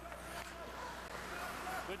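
Hockey arena crowd murmur, an even background haze of many voices over a steady low hum. A commentator's voice starts near the end.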